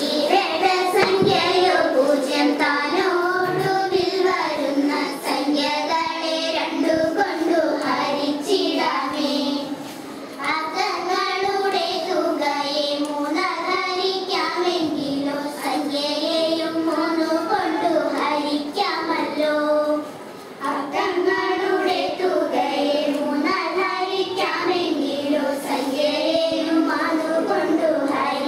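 A group of girls singing a Malayalam vanchippattu (Kerala boat song) together into a microphone, with short breaks between lines about ten and twenty seconds in.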